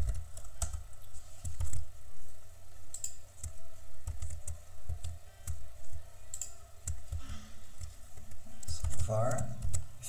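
Typing on a computer keyboard: irregular key presses and clicks. A brief voiced sound comes near the end.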